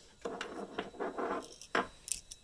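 Handling noise on a wooden desktop: a few light knocks and rustles as a hand moves a small metal toy pistol about.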